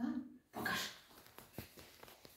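Small dog giving a short whine and a brief bark-like sound as its lead is unclipped, then a few clicks of its claws on the tile floor as it moves off.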